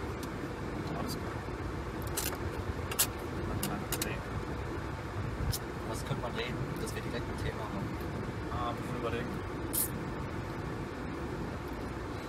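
Car cabin noise while driving: a steady low rumble of engine and tyres on the road, with a few sharp clicks scattered through it, the loudest about three seconds in.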